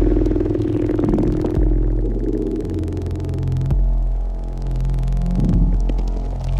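Electronic drone music: deep sustained bass tones that shift to new pitches about every two seconds, with a held mid-range tone that fades out in the first two seconds.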